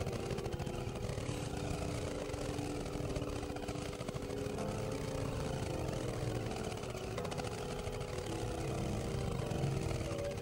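Experimental electronic drone music: a dense, rough low rumble under held synthesizer tones that step from one pitch to another.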